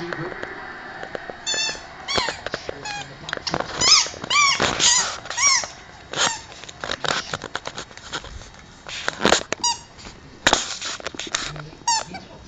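A run of short high-pitched squeaks, several a second, from West Highland terriers at play with a donut, with a few more later on.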